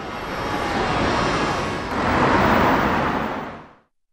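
City street traffic: cars passing by as a steady rushing noise that swells twice, then fades out near the end.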